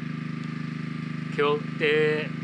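A generator engine running steadily with an even, low hum.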